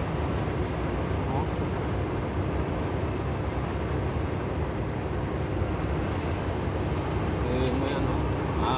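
Steady engine and road noise inside a vehicle's cab cruising at motorway speed, a constant low rumble with tyre hiss.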